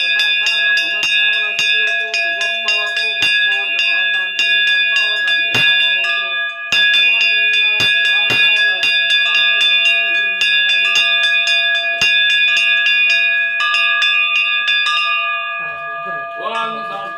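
A brass puja bell rung rapidly and continuously during worship at a Shiva shrine, struck about three times a second so that its ringing never dies away.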